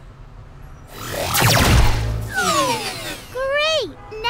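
Cartoon sound effects: a whoosh about a second in, followed by falling whistle-like glides, then a short voice-like rise-and-fall near the end.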